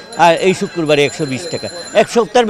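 A man speaking Bengali.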